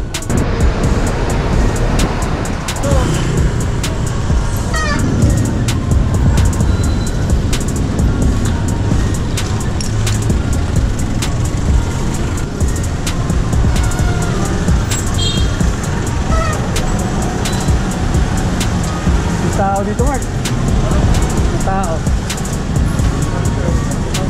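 City traffic and wind noise from riding a bicycle among cars and motorcycles, with music playing over it and some voices.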